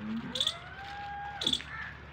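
A goat kid bleating once: one long call that rises in pitch, holds, then drops off about one and a half seconds in. Two short, sharp high-pitched chirps sound alongside it, about a second apart.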